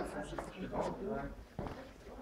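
Faint voices talking in the background, with a few light clicks.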